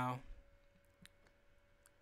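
A few faint clicks of a computer mouse, about half a second apart, after a spoken word trails off at the start.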